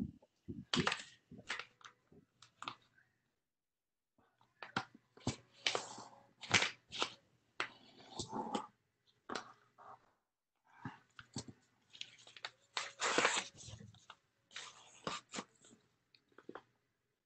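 A sheet of paper being folded and creased by hand: irregular bursts of paper crinkling and rustling, broken by short pauses.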